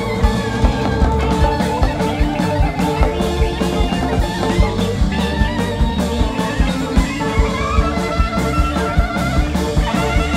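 Live rock band playing at full volume: a drum kit keeps a steady beat under electric guitar, bass and a wavering melody line.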